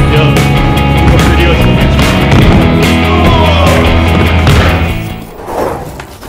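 Background music with a heavy steady beat that fades out about five seconds in, followed by a brief sweeping sound.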